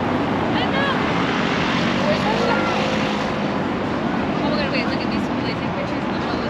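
Steady traffic noise from cars driving on a cobbled roundabout, with people's voices talking nearby.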